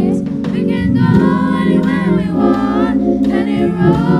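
A youth choir of children and teenagers singing a gospel song together into microphones, with instrumental accompaniment holding chords underneath the voices.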